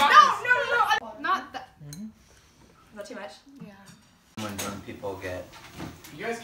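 Excited voices of a small group shouting and laughing, with a few light clinks and knocks in a quieter stretch in the middle. The voices get loud again near the end.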